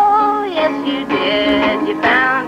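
Music: a song with a voice singing held notes over guitar accompaniment.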